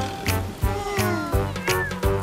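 An animated kitten meowing a couple of times over a children's music backing with a steady beat.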